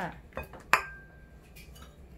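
A single sharp clink of kitchen bowls knocking together, ringing briefly on one clear tone, with a couple of faint taps just before it.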